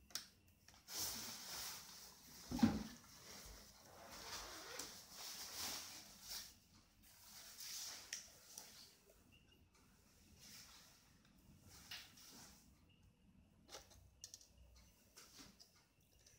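Faint handling noise from a small screwdriver taking screws out of a laptop LCD panel's metal side frame: soft rustling and small clicks, with one sharper knock about two and a half seconds in.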